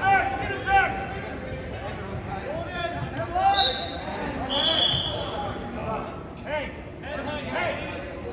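Spectators' voices echoing in a school gymnasium, with a short steady whistle blast about halfway through: a referee's whistle stopping the wrestling. A briefer high squeak comes just before it.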